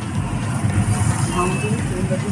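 Steady low rumble of street background noise, with faint voices in the background around the middle.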